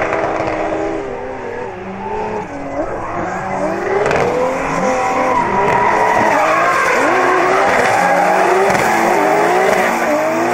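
Two drift cars sliding in tandem, their engines revving hard with the pitch rising and falling as the throttle is worked, over the squeal of spinning rear tyres. It gets louder from about halfway through as the cars come closer.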